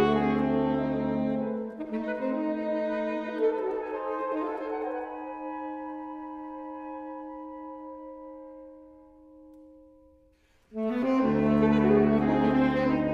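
Saxophone quartet (soprano, alto, tenor and baritone) playing held chords. The full chord with the baritone's low notes breaks off about a second and a half in, the upper saxophones sustain long notes that fade away into a brief pause, and the full quartet comes back in loudly near the end.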